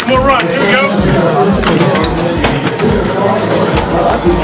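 Several people talking over one another, with music and its steady low beat underneath.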